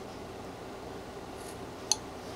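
A whittling knife's tip nicking into a small wooden carving: two short, crisp clicks about two seconds apart over a steady low room hum.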